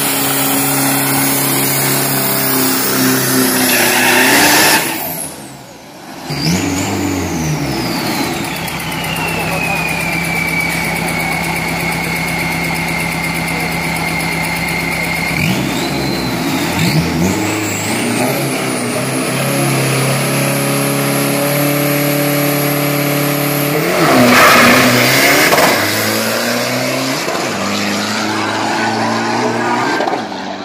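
Turbo-diesel drag-racing Isuzu pickup engine running at held revs after a burnout, its turbocharger whine falling and settling to a steady high whistle as the revs come down. The revs then build and the turbo whine climbs steeply, with a loud full-throttle burst about 24 seconds in.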